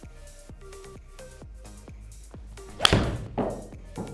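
Titleist T300 iron striking a golf ball off a hitting mat, a single sharp crack about three seconds in. The ball is caught right out of the toe. About half a second later it thuds into the simulator's impact screen.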